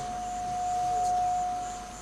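A single steady ringing tone from the public-address system, typical of microphone feedback: it holds one pitch, swells a little past the middle and fades out near the end.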